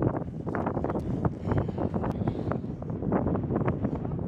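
Gusty wind buffeting the camera microphone, a rough, uneven rumble.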